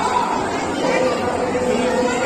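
Voices of several people talking and chattering, with no distinct non-speech sound standing out.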